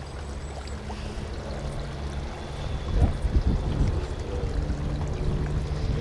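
Wind buffeting an outdoor microphone: an uneven low rumble, with a stronger gust about halfway through.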